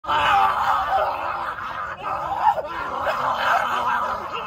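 A person's voice singing a wavering tune, played through a small speaker so it sounds thin with almost no bass, with a brief break about halfway through.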